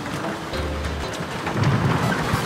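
A heavy wooden bookshelf on caster wheels being pushed across a floor, its wheels rumbling. The rumble gets louder after about a second and a half.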